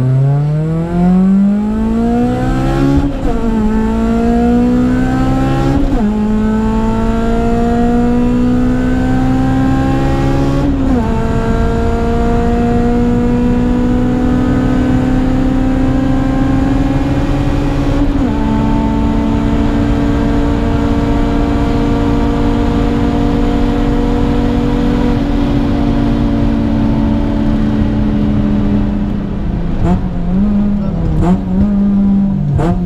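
Honda K20 four-cylinder engine in a Civic accelerating hard from a standing start, heard from inside the cabin: the revs climb and drop back with each upshift, four gear changes in all, about 3, 6, 11 and 18 seconds in. The engine then holds high revs, and the note falls away over the last few seconds.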